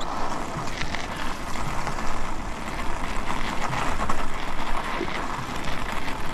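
E-bike tyres rolling over crusted snow and ice: a steady noisy hiss with scattered small crackles and a low rumble.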